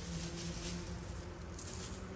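Soft rustling of dry, ripe barley stalks being gathered by hand and cut down low.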